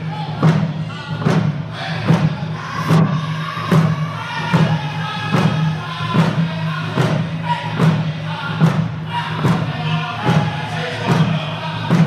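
Round dance singers beating hand drums in unison, one even stroke slightly faster than one a second, while singing a round dance song together in high voices.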